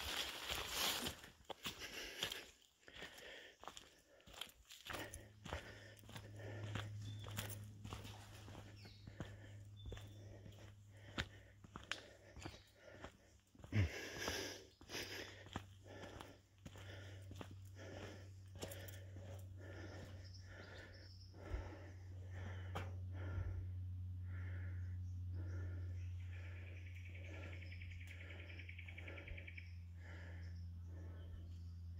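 Footsteps of a person walking at a steady pace along a bush track, crossing a metal mesh footbridge about halfway through. A low steady hum sets in about five seconds in and carries on under the steps.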